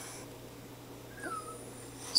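A pug gives one short, faint whine that falls in pitch about a second in, begging for a treat.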